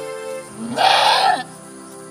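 A goat doe in labour bleats once, loudly for about half a second near the middle, as her kid is being born. Steady background music plays throughout.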